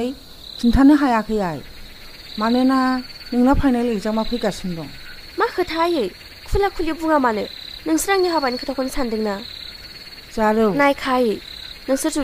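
Crickets chirping steadily, with frogs calling over them about once a second, many calls falling in pitch.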